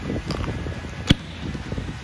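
The latch on a hard-shell rooftop tent's base being done up: one sharp click about a second in, among lighter knocks and handling of the metal hardware.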